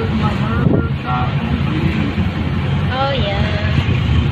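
Steady engine and road rumble of a moving vehicle heard from on board, with wind buffeting the microphone. Short voices come through about a second in and again near the end.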